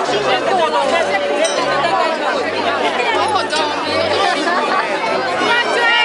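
A crowd of people talking over one another, many voices at once, with low bass notes of music running underneath.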